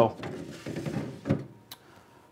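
Spanish cedar drawer sliding closed into a humidor cabinet, wood rubbing along its runners, with a short knock about a second in as it seats.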